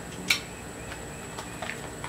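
Plastic markers clicking against each other and the plastic bowl as a hand sorts through them: one sharp click about a third of a second in, then a few softer clicks later.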